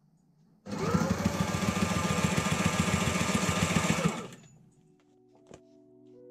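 Sailrite sewing machine running a burst of rapid, even stitching through canvas and clear plastic sheet, its motor winding up about a second in and winding down after about three and a half seconds.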